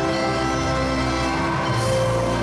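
Music with held, sustained notes over a low bass; the bass note changes near the end.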